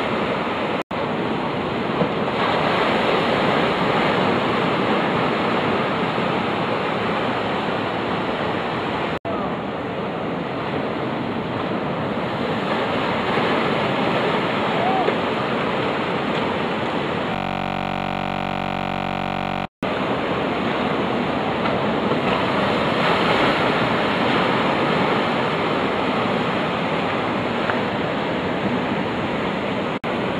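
Ocean surf breaking on a sand bar: a loud, steady wash of waves. The sound cuts out suddenly three times, about a second in, about nine seconds in and near twenty seconds.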